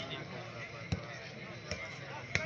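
Two sharp smacks of a volleyball being hit during a rally, about a second in and again near the end, the first louder, over steady crowd chatter.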